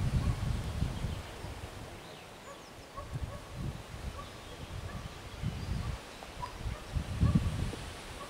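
Wind buffeting the camera microphone in uneven gusts, strongest at the start and again near the end, with faint bird calls in the background.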